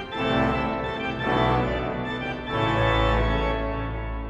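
Théodore Puget romantic pipe organ playing sustained chords in three swelling phrases, with a deep pedal bass coming in strongly about two-thirds of the way through.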